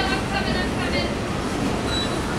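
Empty coal cars of a freight train rolling past: a steady noise of steel wheels running over the rails.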